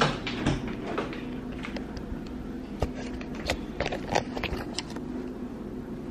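Apartment entry door being opened by hand: scattered clicks and knocks from the latch and lock hardware over a steady low hum.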